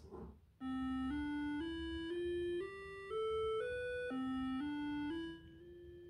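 AY-3-8910 programmable sound generator, driven by an Arduino, playing a single square-wave tone on channel A through powered speakers. Starting about half a second in, the pitch steps up every half second through a seven-note rising scale, then drops back to the lowest note and climbs again.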